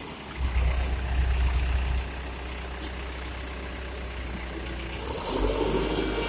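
Ajax Acura 2500 self-loading concrete mixer's diesel engine running with a deep rumble, revving up about half a second in, easing back after about two seconds, then rising again near the end. A short hiss sounds just before the second rise.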